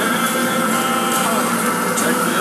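Automatic greenhouse seeder running: a steady mechanical hum with a few held whining tones.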